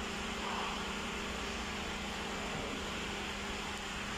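A steady low mechanical hum with an even hiss over it, unchanging and with no distinct knock or click.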